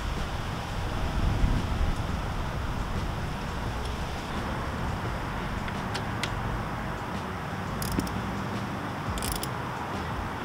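Steady outdoor background noise with low wind rumble on the microphone. A few faint, short clicks come in the second half as a hex key works the bar-end mirror's mounting bolt.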